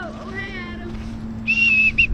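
A voice gives a falling 'ohh', then a shrill whistle sounds near the end: one held high note lasting under half a second, breaking into short toots.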